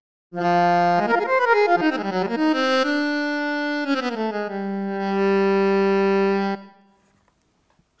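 Odisei Travel Sax digital saxophone played through its app's sampled alto saxophone sound. It plays a short phrase: a held low note, a quick run of notes, then a slide down into a long low note that stops abruptly.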